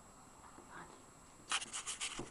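Handling noise on a Medion 5-in-1 digital mini video camera: fingers rubbing and scraping on the camera's body close to its built-in microphone. It starts suddenly about one and a half seconds in, after near quiet.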